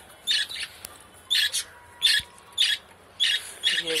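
Young budgerigar held in the hand, squawking: about five short, harsh calls, roughly half a second to a second apart.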